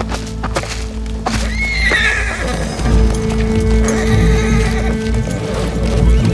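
A horse whinnies once, about a second and a half in, with hooves clopping, over a steady dramatic music drone.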